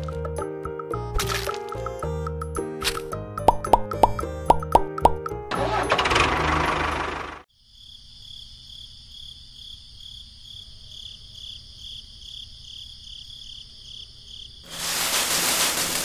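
Bright background music with plucked notes, cut off by a whoosh transition. A steady, pulsing high chirring like crickets at night follows, then a second whoosh near the end.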